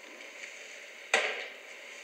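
A single sharp knock about a second in, fading quickly, over faint room tone.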